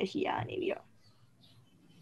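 Short speech in the first second, voice only, then a faint steady room hum for the rest.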